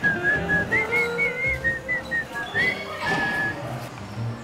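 A person whistling a short tune of several high notes that bend and slide, stopping near the end, over background music.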